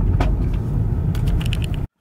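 Steady low rumble of a car's engine and road noise heard from inside the cabin while driving, with a few faint clicks; it cuts off suddenly near the end.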